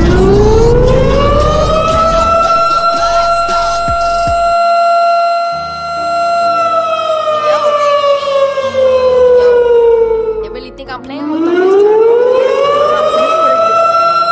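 A wailing siren tone: it rises over about two seconds and holds, slides slowly down around the middle, then rises again and holds near the end. Low notes step along underneath it, as in a music track.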